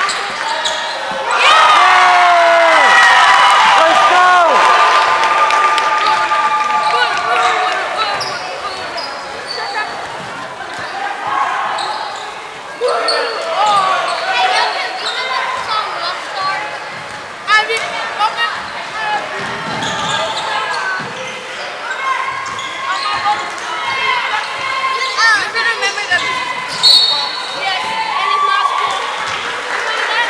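Spectators shouting and cheering in a gymnasium, loudest in the first several seconds, over a basketball bouncing and sneakers squeaking on the hardwood court, with scattered sharp knocks.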